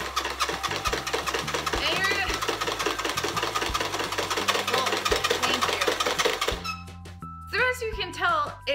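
Applause machine clapping fast: a DC motor drives a spring-loaded pair of kitchen tongs so two hollow plastic hands slap together in a quick, even rattle of claps. The clapping stops about six and a half seconds in.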